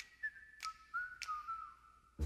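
Faint whistled tune sliding between a few notes, with sharp finger snaps about every 0.6 seconds keeping time.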